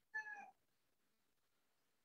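A single short, faint high-pitched cry in the first half second, lasting about half a second. After that there is near silence.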